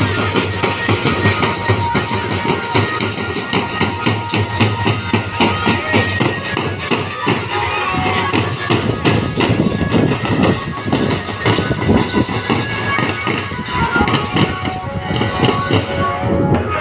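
Music with a steady, dense drumbeat and a held melody line over it.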